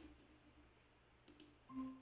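Near silence: room tone, with one faint click about a second and a quarter in and a brief faint hum just before the end.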